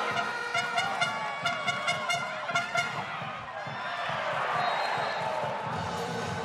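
Volleyball arena crowd noise: fans' horns hold notes over a regular beat of claps or drums, about three to four a second, for the first half. That dies away and gives way to a swell of crowd noise.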